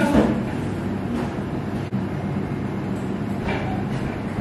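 Steady low mechanical rumble with a constant hum, and a single sharp click about halfway through.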